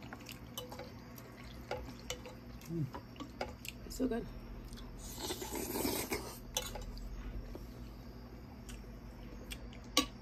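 Metal spoons clinking and scraping against glass bowls of soup, with wet eating and slurping mouth sounds and a couple of brief hums; a longer slurp about five seconds in.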